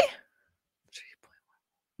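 A woman's voice trails off at the end of a sentence, then a pause broken only by one short, faint breath-like whisper about a second in.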